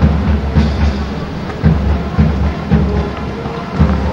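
Heavy rain falling on an outdoor microphone, a steady patter with deep low thumps about twice a second.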